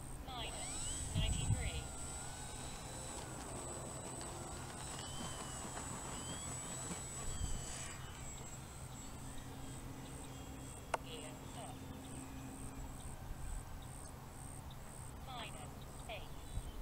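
Electric motor and propeller of a foam RC P-51 Mustang warbird taking off and climbing away: a high, steady whine that cuts off about eight seconds in.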